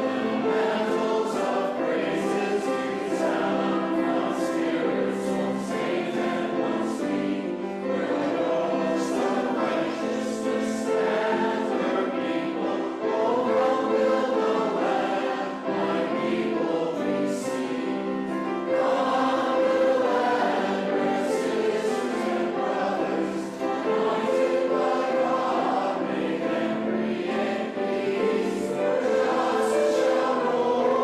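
A congregation of mixed voices singing a hymn together, steady and full throughout.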